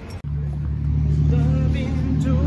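A vehicle engine idling with a steady low hum, starting abruptly about a quarter second in.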